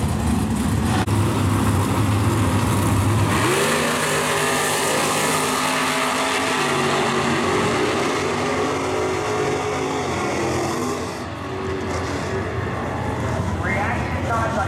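Two drag racing cars, a supercharged 1938 coupe and a Camaro, running loud at the starting line, then launching about three seconds in at full throttle and accelerating away down the strip. Their engine note climbs in steps as they run through the gears, and fades near the end as the cars reach the far end of the track.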